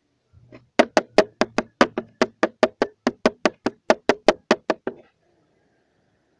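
A rapid, even series of about twenty sharp knocks on a hard surface close to the microphone, about five a second for some four seconds, then stopping.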